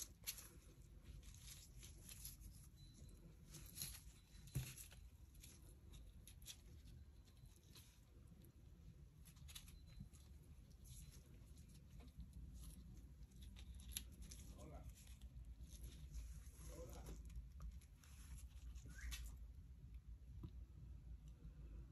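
Near silence with faint, scattered small clicks and rustles of gloved hands handling dried pressed flowers and metal tweezers over a plastic sheet.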